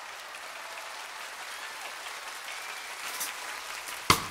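Steady audience applause, fairly faint.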